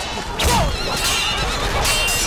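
A horse whinnying amid a sword fight, with a wavering high neigh after a sharp hit about half a second in.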